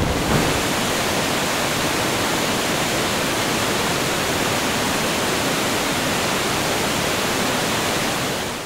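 Steady rushing of a waterfall, an even hiss that holds at one level throughout.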